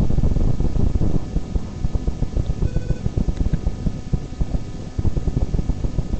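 Rumbling and knocking handling noise on the camera's microphone as the camera is moved, with faint music underneath.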